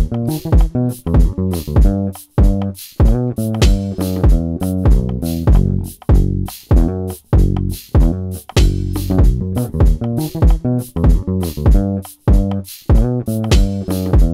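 Electric bass guitar played live, a funky bass line over a backing track with a steady drum beat.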